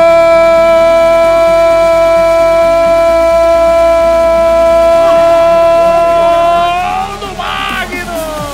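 A sports commentator's long drawn-out goal shout, one note held steady for about seven seconds before it falls and wavers near the end, over background music.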